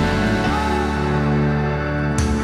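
Live band playing an instrumental passage with no singing: sustained chords over a steady bass, without drum strikes until just after the end.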